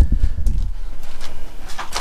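Aluminium foil around a brisket crinkling, with light clicks and knocks as the wrapped meat is handled on a kettle grill's metal grate. A low rumble fills about the first half second.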